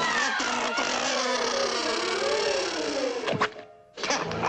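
Cartoon soundtrack with music and pitched sounds that slide slowly. About three and a half seconds in, a steep falling glide ends in a short, loud impact, followed by a sudden hush.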